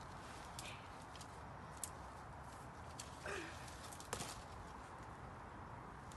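Quiet outdoor background with a few faint scattered clicks. About three seconds in comes one brief falling voice-like sound.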